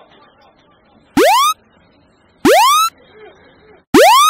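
An electronic alarm-like whoop sounds three times, loud, about a second and a third apart. Each is a short tone that sweeps quickly upward and levels off, and the last is cut off abruptly. Faint voices chatter underneath.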